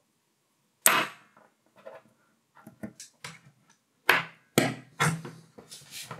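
Sharp clacks and clicks of a small neodymium magnet and metal pieces being handled and knocked against a desk and disc: one loud clack about a second in, lighter clicks after it, then four loud clacks in quick succession near the end.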